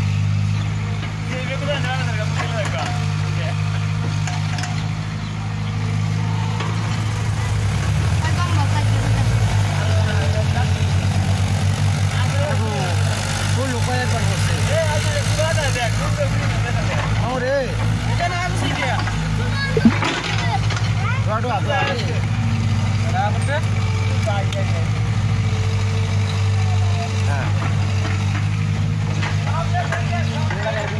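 Heavy diesel engine of a working excavator running steadily, its note thickening and a little louder from about eight seconds in as the machine digs and swings its bucket, with a single sharp knock about twenty seconds in. Voices talk over it.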